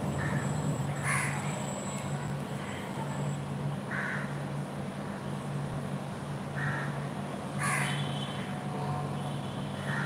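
Crows cawing several times in the background, single short calls a few seconds apart, the loudest about a second in and near the end, over a steady low hum.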